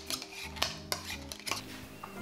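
Muddler crushing strawberries and mint in a stainless steel shaker tin: about five sharp metallic knocks as it strikes the bottom of the tin, thinning out toward the end.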